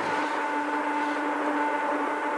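Death-industrial drone from a 1996 cassette: two steady held tones, one low and one higher, over a dense noisy wash, unchanging throughout.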